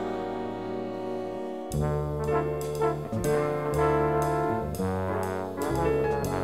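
Big band jazz: the brass section holds a sustained chord, then about a second and a half in the full band comes in with bass and drums, playing sharp accented ensemble hits.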